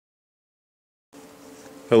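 Silence, then about a second in a steady low electrical-sounding buzz starts, and a man's voice begins just at the end.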